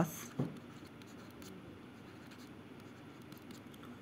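Faint scratching and light ticks of handwriting strokes on a smartphone touchscreen, with short pauses between strokes.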